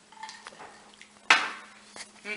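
Dishware clattering on a hard surface: faint small knocks, then one sharp, loud clink about a second and a half in that rings out briefly.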